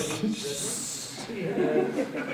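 A man's voice with a long breathy hiss in the first half, then speech.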